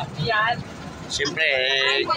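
People's voices: brief talk, then a drawn-out, high-pitched call from about a second in, over a low rumble.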